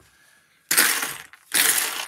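Loose plastic building-set pieces rattling and clattering as a hand rummages through them in a tray, in two bursts: one under a second in and one near the end.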